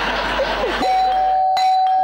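Noise from the theatre audience, then a stage doorbell sounding one steady electronic tone from a little under a second in, held past the end.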